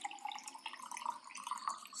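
Water being poured from a jug into a drinking glass, a continuous steady pour.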